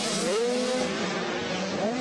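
85cc two-stroke motocross bikes revving on the track. Engine pitch climbs soon after the start, holds, then climbs again near the end as the riders get back on the throttle.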